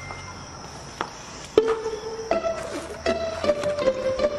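Background music: after a quiet start, plucked string notes begin about one and a half seconds in, one note at a time at about two a second, in a slow melody.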